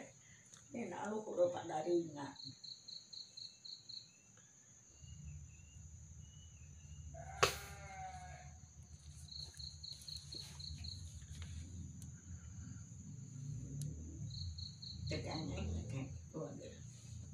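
Faint high chirping in three short trains of rapid pulses over a steady thin high whine, typical of an insect at night. A single sharp click comes about halfway, and a low hum sets in about a third of the way through.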